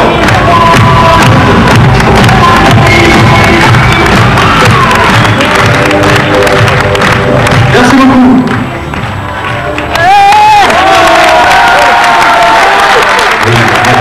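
Loud music playing over a crowd, with cheering. About eight seconds in the music drops briefly, then comes back in full.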